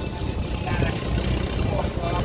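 Steady low rumble of a motor passenger launch under way, heard from on board, with faint voices in the background.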